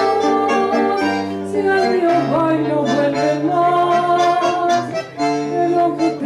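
Bandoneón and acoustic guitar playing a tango passage between sung lines, the bandoneón holding long sustained chords that change every second or so.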